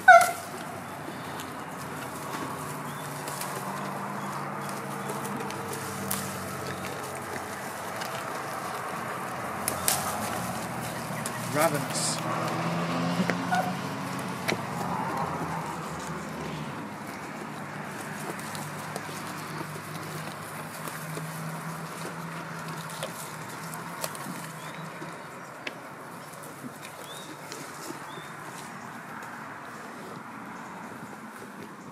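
Goat browsing on a leafy branch: leaves rustling, crackling and being pulled, over a steady low background hum. A short, loud cry falling in pitch sounds at the very start.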